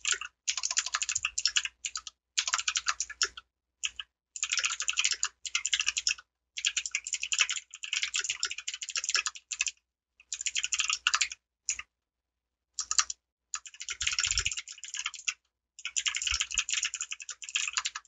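Computer keyboard being typed on in quick runs of keystrokes, one to two seconds long, broken by short pauses.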